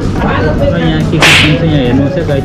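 Voices and background music, broken by one sudden loud hissing burst, about a quarter of a second long, a little over a second in.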